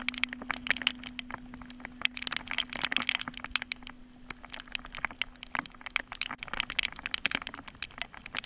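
Dense, irregular sharp taps and splashes of rain and wind-blown water striking a fishing kayak and the action camera's housing while paddling through choppy water, over a steady low hum that fades out about six seconds in.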